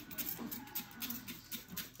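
Hand-held trigger spray bottle misting a glass door a few times, each squirt a faint, short hiss.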